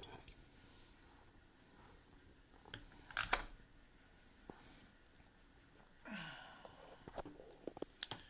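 Faint, scattered small clicks and taps of hands handling a collectible bust's battery-powered light-up gauntlet while switching its light on, with a cluster of clicks about three seconds in and a short soft rustle about six seconds in.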